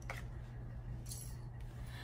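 Faint rustling of fabric and fur as a cat is lifted against a sweatshirt, with a brief soft scrape a little past one second in, over a steady low hum.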